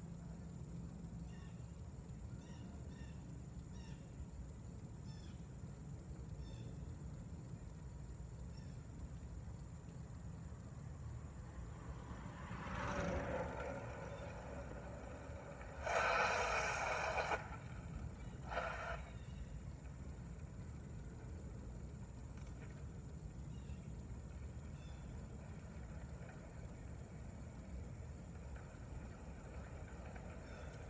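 Outdoor street ambience with a steady low rumble, a swell of noise a little before halfway, and two short hissing bursts just after halfway, the first the loudest.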